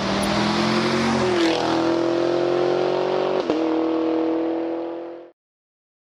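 Channel outro sting over the logo card: a held, layered tone over a hiss that steps up in pitch about a second and a half in, with a brief click past the middle, then fades and stops short of the end.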